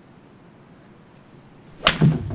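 A seven iron swung hard, a short whoosh followed near the end by a sharp crack as the club strikes a Vice Pro Soft golf ball off a hitting mat; a much smoother strike than the fat shot before it.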